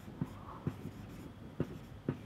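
Marker pen writing on a whiteboard: faint scratchy strokes with a few light taps of the tip against the board.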